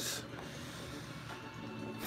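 Handling noise from a phone camera being turned around and set in place: a short rustle at the start, then low, steady rubbing.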